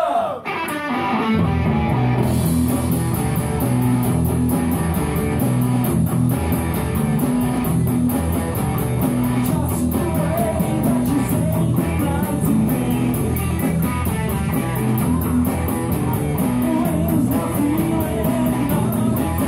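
Live rock band playing: guitar and drum kit kick into a driving, repeating riff about a second in, after a brief break.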